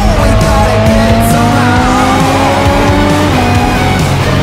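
A sports car's engine accelerating hard, its pitch climbing steadily for about three seconds and then dropping suddenly at an upshift near the end, with background music.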